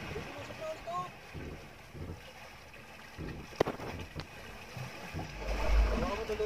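Wind on the microphone and open sea around a small outrigger boat, with a sharp knock about three and a half seconds in and a low wind rumble building near the end.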